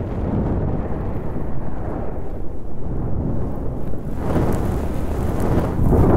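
Thunder sound effect: a continuous low rumble that swells about four seconds in and builds to its loudest at the end.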